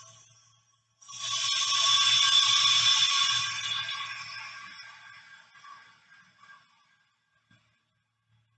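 Compressed air hissing into a 2½-gallon Harbor Freight paint pressure pot as its air valve is opened. The hiss starts suddenly about a second in and fades away over several seconds as the pot fills toward about 37 psi.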